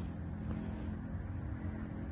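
Insect chirping: a high-pitched pulse repeating evenly about seven times a second, over a low steady hum.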